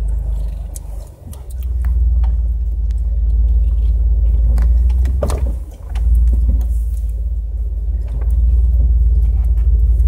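A Jeep crawling over a rough, muddy woodland trail, heard from inside the cab: a steady low engine and drivetrain rumble with scattered knocks and rattles as the body bumps over the ground. The rumble dips briefly twice, about a second in and again near six seconds.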